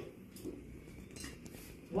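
Quiet room with a few faint, brief handling noises, light clicks and rustles, in a pause between voices.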